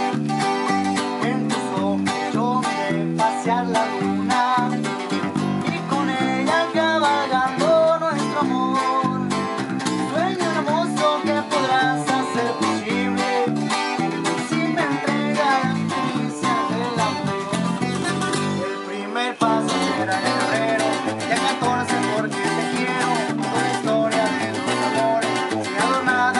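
Several acoustic guitars, one of them a twelve-string, playing together: strummed chords and a picked melody over a stepping bass line, with the low end dropping out for a moment about two-thirds of the way through.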